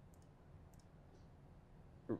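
Near silence with a few faint clicks in the first second or so, typical of a computer mouse being clicked to change the launch-monitor screen.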